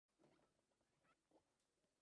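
Near silence: faint room tone with a few soft, brief sounds.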